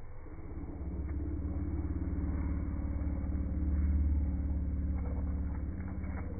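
Zwartbles ewes bleating, played back in slow motion so that the calls become one long, deep, drawn-out moan like a whale song, loudest in the middle.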